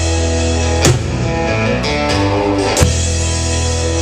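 Live indie-rock band playing an instrumental passage: electric and acoustic guitars, keyboard and drum kit, with two loud drum-and-cymbal hits about a second in and near three seconds. Heard through a cheap camera's microphone, so the sound is a bit rough.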